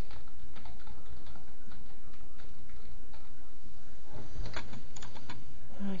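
Scattered clicks of a computer mouse and keyboard, with a cluster of sharper clicks about four and a half seconds in, over a steady low hum.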